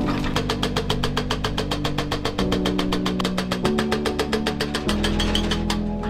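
Excavator-mounted hydraulic breaker hammering concrete block, a rapid, even chatter of about ten blows a second as it breaks up the old retaining wall. Background music with steady chords plays under it.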